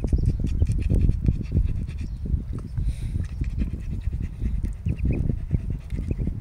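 Ducklings pecking and dabbling at feed pellets in a plastic feeder tray: a rapid, irregular run of small clicks and scuffs in wood shavings, with a few faint peeps.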